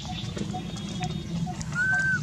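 Orphaned baby macaque crying: a single high-pitched, arching coo cry starts near the end, over a faint regular chirping about twice a second.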